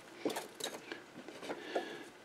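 Faint, scattered small metallic clicks of a Jacobs drill chuck and small metal parts being handled by hand.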